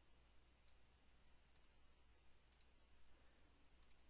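Near silence with a few faint computer mouse clicks, some in quick pairs, over a low steady hum.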